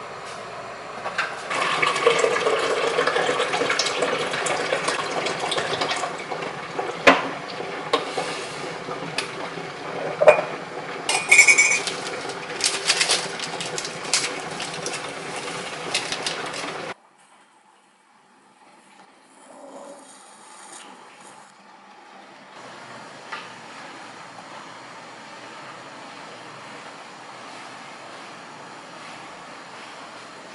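Liquid splashing and running at a Mr. Coffee drip coffee maker, with sharp clinks of a metal spoon stirring in a ceramic mug. After a sudden cut, a quieter steady hiss from a handheld garment steamer follows.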